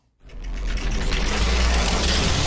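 Outro sound effect: a deep rumbling swell with dense hiss that fades up a moment in, builds over about a second and then holds steady.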